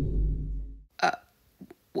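The tail of a deep, booming sound effect dies away over the first second. A short, hesitant 'uh' follows, then a cut-off 'wh'.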